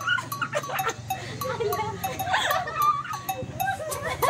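Voices laughing and shrieking in high, gliding cackles, over dance music with a steady beat.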